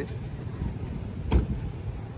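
Vehicle engine idling with a steady low rumble, with a single heavy thump about a second and a half in.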